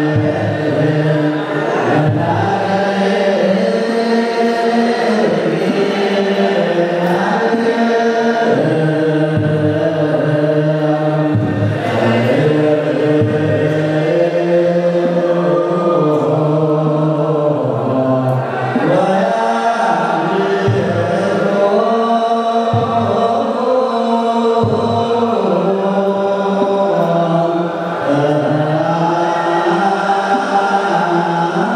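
A large group of men chanting together in Eritrean Orthodox Tewahedo liturgical chant. Long drawn-out notes slide up and down in pitch, with short breaths between phrases.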